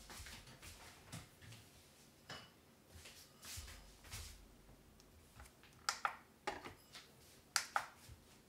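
Faint kitchen handling sounds as a bowl is fetched and set out: light rustling, then several sharp clicks and taps in the second half.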